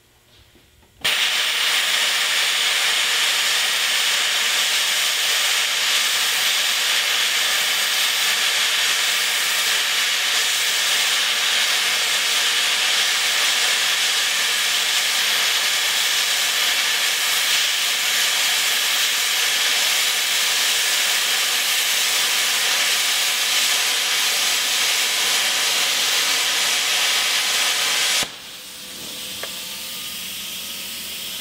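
Hypertherm Powermax45 XP handheld plasma torch gouging out a weld: the arc and air jet start about a second in as a loud, steady hiss and run evenly until they cut off sharply near the end, leaving a quieter hiss.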